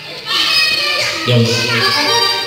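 Children shouting and playing over live band music with an accordion.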